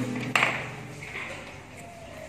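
A single sharp clink about a third of a second in, ringing on briefly and fading, over a faint steady low hum.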